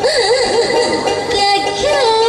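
Bhawaiya folk song: a high singing voice with a wide, wavering vibrato, over the sound of the band.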